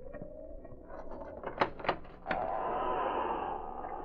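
Radio-drama sound effects of a storm wind, with a few sharp knocks and clicks about one and a half to two and a half seconds in, like a barn door's latch being worked. After the clicks the wind grows louder, as if the door has opened onto the storm.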